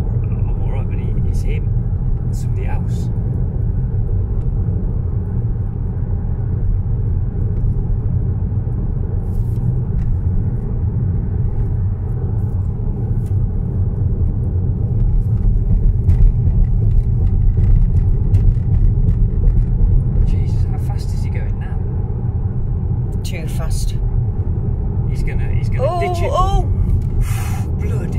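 Road noise inside a moving car at speed: a steady low rumble of engine and tyres that swells a little about halfway through.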